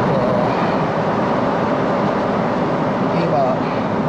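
Steady cabin noise of a Boeing 777-300ER airliner in cruise: a constant rush of engine and airflow noise inside the cabin.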